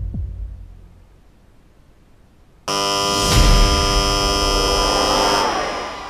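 A low, throbbing music bed fades out. About two and a half seconds in, a game-show buzzer cuts in suddenly, loud and steady with several tones at once. The buzzer marks the contestant's chosen number as not the one that clears the debt.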